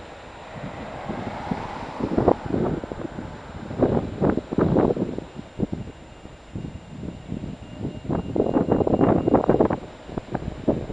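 Wind buffeting the camera microphone in irregular gusts over street traffic noise, the gusts starting about two seconds in and coming strongest near the middle and the end.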